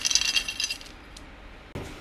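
Dry dog kibble rattling and clinking against a metal scoop as it is dug out of a bucket. The clinking dies away about a second in, and a faint knock follows near the end.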